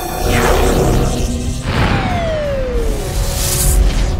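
Cartoon sound effects of rockets launching: two whooshes, each with a falling whistle, over a loud low rumble and background music.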